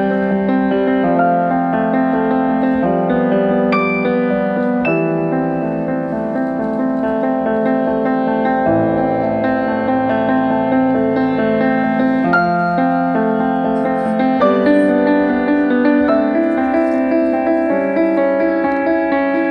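Solo grand piano playing steady, repeating broken-chord figures, the harmony shifting every second or two.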